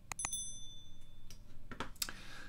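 Subscribe-button sound effect: a mouse click followed by a bright bell ding that rings out for about a second. A couple of softer clicks follow near the end.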